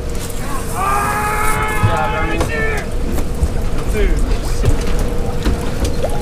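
Low rumble of wind and the boat's engine with a steady hum. About a second in, a person lets out a drawn-out yell lasting about two seconds.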